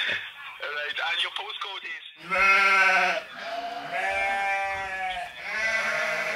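Three drawn-out sheep-like bleats, 'baa', each about a second long, following some faint talk in the first two seconds.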